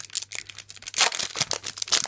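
Foil trading-card booster pack wrapper crinkling and crackling as it is pulled and torn at. The pack is stubborn to open. It gives a rapid, irregular run of sharp crackles, loudest about halfway through.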